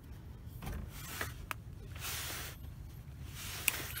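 Faint rubbing of a cloth rag wiping the oil filter mounting flange under the engine, with a few light clicks over a low steady background hum.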